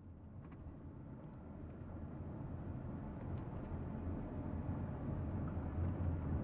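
Car interior noise while driving up a steep mountain road: a steady low engine and road rumble that grows gradually louder.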